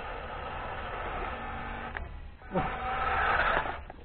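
Electric motor and gearbox of a WPL D12 RC pickup whirring, in two stretches with a brief drop about two and a half seconds in.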